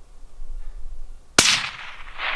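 A single rifle shot about one and a half seconds in, its report trailing off in a long echo.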